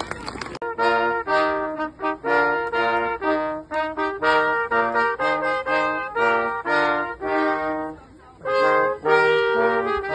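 A small brass group of trombone and trumpets playing a melody in separate held notes, starting about half a second in, with a brief pause between phrases near eight seconds.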